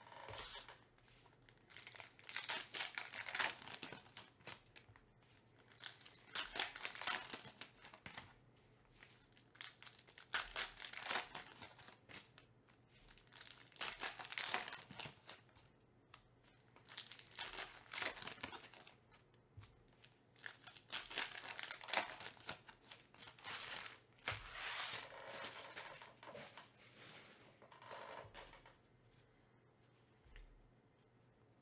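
Silver foil wrappers of Topps Finest baseball card packs being torn open and crinkled by hand, one pack after another: about eight bursts of crinkling a few seconds apart.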